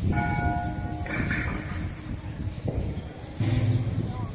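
A metallic bell-like ringing: a struck note that rings steadily for about a second, then a brighter clang just after. Near the end a short, low, steady tone comes in.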